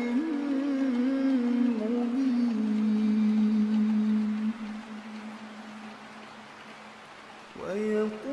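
Male voice in melodic Qur'an recitation: a phrase with small turns ends in a long held note that fades away over several seconds. A new phrase begins with a rising note near the end.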